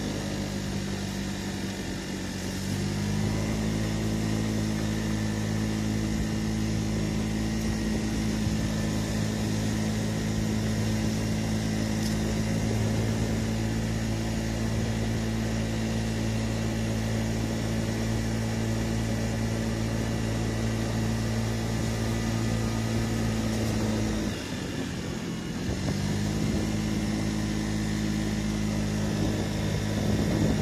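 Honda Tact 50cc scooter engine running steadily under throttle on a climb. It eases off in the first couple of seconds and again about 24 seconds in, the note dropping before picking back up each time.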